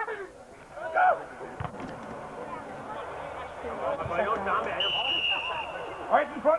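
Crowd voices at a Gaelic football match: a shout about a second in, then low chatter from the sideline. Near the end comes a single steady referee's whistle blast, lasting about a second.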